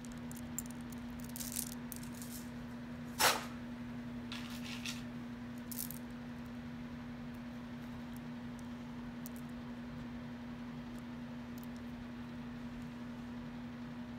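Bead necklaces and metal jewelry clicking and rattling lightly as they are handled, mostly in the first half, with one sharper click about three seconds in. A steady low hum runs underneath.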